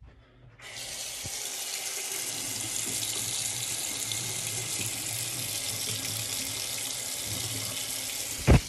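Water from a bathroom sink faucet running in a steady stream into the basin, turned on about half a second in.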